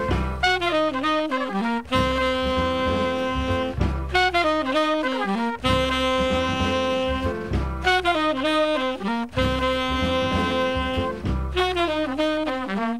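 Hard bop jazz group: trumpets and tenor saxophone play a repeated ensemble riff, a quick run of notes and then a long held note, about every four seconds, over bass and drums.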